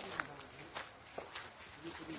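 Footsteps on a sandy gravel path at a steady walking pace, a little under two steps a second, with faint voices in the background.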